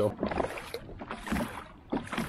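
Water splashing and lapping around a kayak on open water, an uneven rushing noise with a few light knocks.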